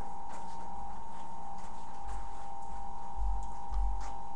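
A steady high-pitched hum with a fainter low hum beneath it, a few faint clicks, and low rumbling thuds from about halfway through.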